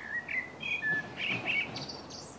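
A songbird singing: a quick run of short chirping notes, with higher notes near the end, over a faint steady outdoor background.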